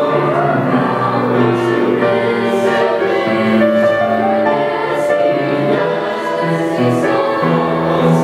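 A mixed middle-school choir of boys and girls singing in harmony, holding long sustained notes.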